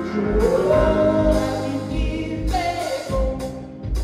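Live indie rock band playing: a male singer holding long notes that slide up and later fall, over electric guitar, bass and a regular kick-drum beat.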